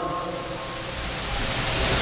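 A steady, even hiss with no pitched sound in it, growing a little louder toward the end.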